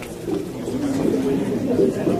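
Low, muffled murmur of people talking, with no single voice standing out.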